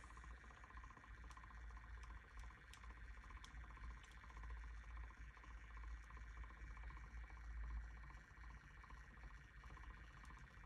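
Near silence: room tone with a steady low hum and a few faint, scattered ticks.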